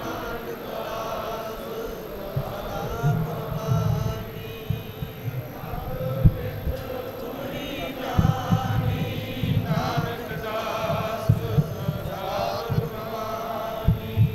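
A congregation of men chanting a Sikh devotional chant in unison, with irregular low thumps underneath.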